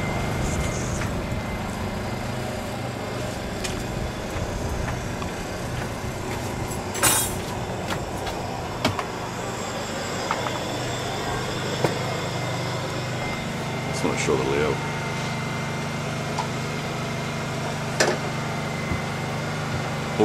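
A motor running with a steady low hum, with a few sharp knocks and clicks over it, the strongest about seven seconds in.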